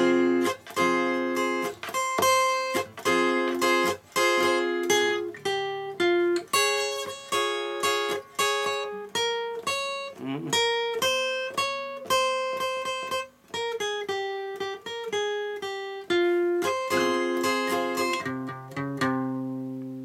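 Solo steel-string acoustic guitar playing a minor-key ballad intro in F minor, open position with no capo: a plucked single-note melody over sustained bass notes, note after note without a break.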